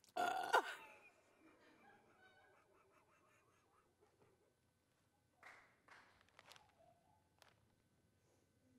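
A woman's short, loud vocal outburst near the start that drops in pitch, followed a few seconds later by quiet, breathy laughter.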